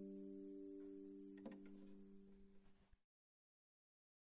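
Double-strung harp's final chord ringing and dying away, with a few faint clicks, then cutting off to silence about three seconds in.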